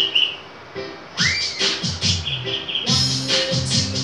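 Opening of a children's song played from a course-book audio track: a short high chirp, then music with a beat coming in about a second in with a rising sweep, fuller from about three seconds.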